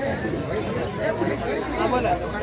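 Guests' voices chattering over one another, several people talking at once.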